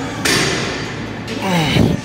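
A man breathing hard through a rep on a plate-loaded seated chest press: a long hissing exhale, then a strained grunt that falls in pitch near the end. The pattern repeats with each rep of the set.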